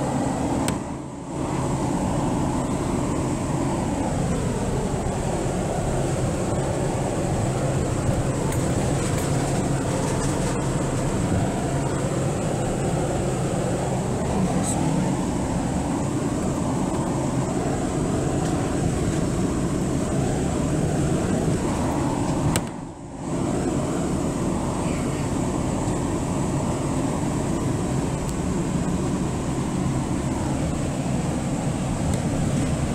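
Car driving on a gravel road, heard from inside the cabin: a steady drone of engine and tyres whose pitch rises and falls slowly as the speed changes. The sound drops out briefly twice, about a second in and again near the 23-second mark.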